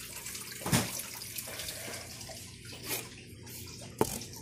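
Water trickling and splashing steadily in an indoor reptile pond fed by a small waterfall filter. A loud knock or splash comes about three-quarters of a second in, with a smaller one near the three-second mark.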